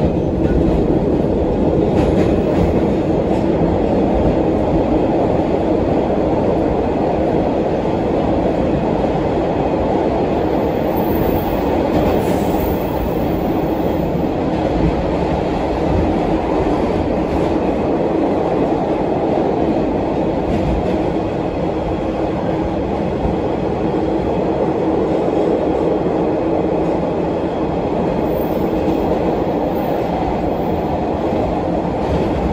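Interior noise of an MBTA Orange Line Hawker Siddeley 01200-series subway car under way: a loud, steady rumble of wheels on rail, with a faint steady hum running through it.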